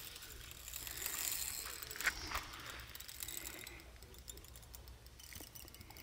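Carp angler's spinning reel being cranked against a hooked fish, its gears giving a quiet run of fine clicking and ticking that is busiest in the first couple of seconds.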